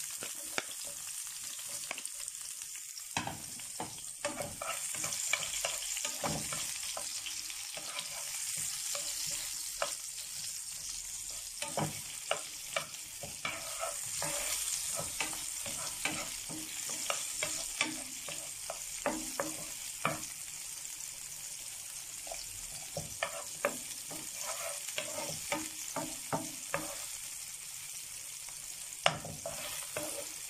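Diced onions sizzling in hot oil in a frying pan as they are sautéed to soften, stirred with a wooden spatula that knocks and scrapes against the pan in many short irregular clicks.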